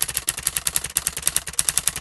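Typewriter-style typing sound effect: a rapid, even run of sharp key clicks as a line of text is typed out letter by letter.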